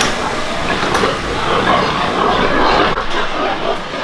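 A metal door latch clacks once at the start, then the loud, continuous rough din of a hog barn room full of pigs, mixed with the barn's ventilation noise.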